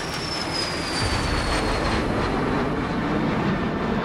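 Jet aircraft taking off: a dense engine roar that swells about a second in, with a thin high whine falling in pitch over the first two seconds.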